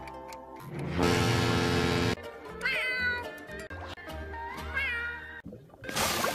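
A cartoon alarm clock ringing loudly for about a second, then two meows from a cartoon pet snail that meows like a cat, over background music.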